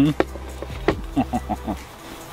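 A man eating, with mouth clicks and lip smacks, then a quick run of four short appreciative "mm" hums over a mouthful of food.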